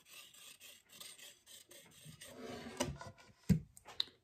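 Protein-test swab rubbed and scraped back and forth across a textured plastic cutting board, a faint irregular scratching. A sharp click about three and a half seconds in.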